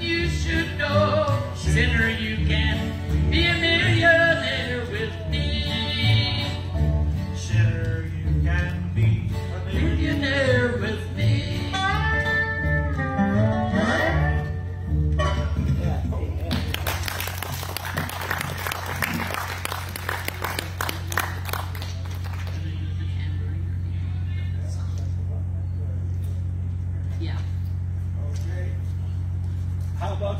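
A live country gospel song on upright bass, acoustic guitar and dobro with singing, ending a little past the halfway point. Then a few seconds of clapping, and after that only a steady low hum from the sound system.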